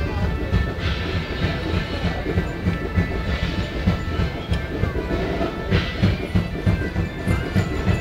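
Medieval-style music played live: an even, repeating drum beat under steady, sustained drone tones.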